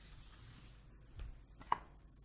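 Whiteboard eraser wiping across a whiteboard in quick rubbing strokes, which stop about a second in; one short click near the end.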